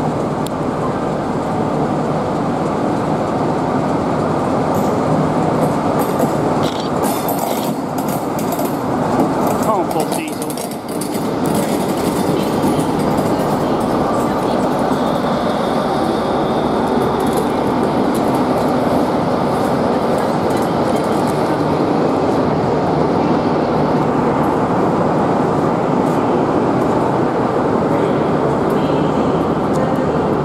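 A diesel locomotive running slowly past close by, followed by a rake of passenger coaches rolling by on the rails. The noise is loud and steady, with a brief dip about ten seconds in.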